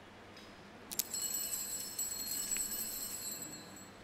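Small altar bells struck sharply about a second in, ringing with several high tones that fade slowly, with a lighter second stroke partway through.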